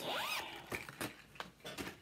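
Zipper on a clear vinyl-mesh project bag being pulled open in the first half-second, followed by scattered clicks and rustling as the bag is handled.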